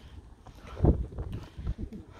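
Wind buffeting the microphone in uneven low rumbles, with one strong gust about a second in.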